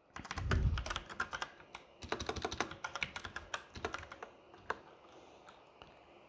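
Typing on a computer keyboard: a quick run of key clicks for about five seconds, with a low thump among the first keystrokes, then a few scattered clicks near the end.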